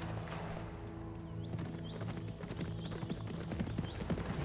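A horse's hooves clip-clopping as it walks on forest ground, with background music of held notes underneath.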